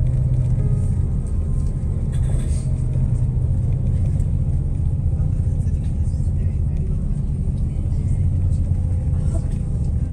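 Steady low engine and road rumble of a moving road vehicle, heard from inside its cabin.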